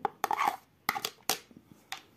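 Pumpkin pulp and seeds tipped from a plastic bowl into a plastic blender jar, with several sharp knocks of the bowl against the jar and the soft thud of the pulp landing.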